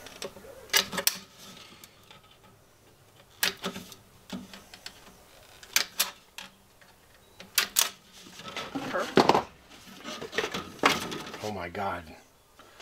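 Aviation tin snips cutting short slits into the rim of a thin metal duct fitting: about eight crisp metallic snips at irregular intervals, several in quick pairs.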